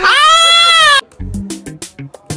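A loud, drawn-out animal-like cry lasting about a second, rising and then slowly falling in pitch, cut off abruptly. Music follows, with a bass line and light percussion.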